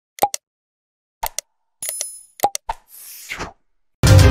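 Sound effects for an animated subscribe button: a series of short clicks and pops, a brief high bell-like ding about two seconds in, then a short falling whoosh.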